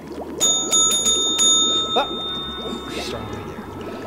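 Chrome desk service bell struck several times in quick succession, its bright ring sustaining, then struck once more about two seconds in.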